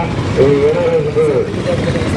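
A voice in long, drawn-out notes that waver in pitch, like chanting or sung speech, over a steady low hum.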